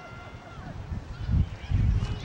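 Low rumbling buffeting on the microphone, in two surges: one about a second and a half in, and a longer one near the end.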